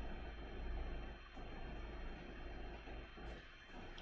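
Faint room tone: a steady low hum under a light even hiss from the recording microphone.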